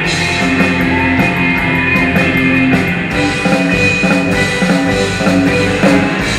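Live surf-rock instrumental band playing: electric guitars over a drum kit, with a steady beat and sustained guitar notes.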